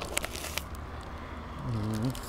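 A bite into a breaded fried-cheese sandwich in a bun, with quick crunchy crackles in the first moment, then chewing with the mouth full and a short low 'mm' hum near the end.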